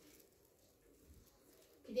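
Faint room tone, then near the end a brief low vocal sound that rises and falls in pitch.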